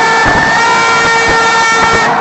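Several horns blown at once, each holding its own steady note, overlapping in a loud drone over the noise of a large crowd on the field.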